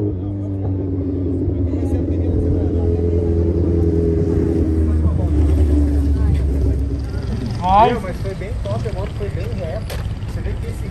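Kawasaki Ninja H2 inline-four motorcycle engine running at low revs with a steady note as the bike rides back slowly, getting louder and then dropping off about seven seconds in.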